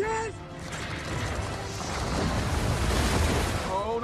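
Action-film sound effects: a dense rush of noise over a low rumble that swells steadily toward the end, with a short line of dialogue at the very start.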